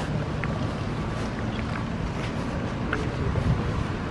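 Wind buffeting the microphone outdoors: a steady low rumble, with a few faint light ticks scattered through it.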